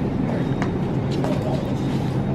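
Shopping cart rolling along a hard store floor: a steady low rumble from its wheels, with a couple of faint knocks.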